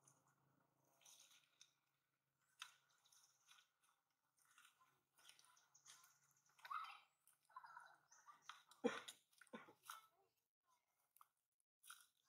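Near silence broken by faint, scattered clicks and short rustles, the sharpest click about nine seconds in.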